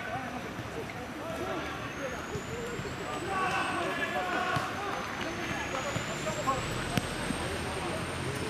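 Players' voices calling across a small-sided football pitch during play, over a steady low rumble. A thin high whine slowly rises in pitch, and a single sharp knock comes near the end.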